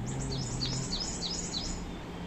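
A small bird singing a rapid string of high, short, downward-sliding chirps, about six a second, that stops near the end. A low steady hum sounds under it for about the first second.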